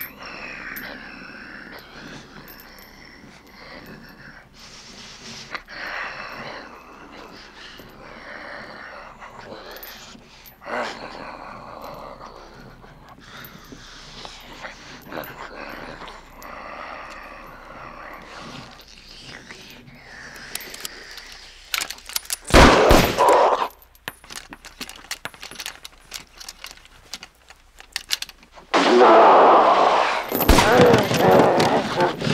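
Film soundtrack of voices groaning and shouting, with loud rifle shots about two-thirds of the way through and a rapid run of sharp cracks after them.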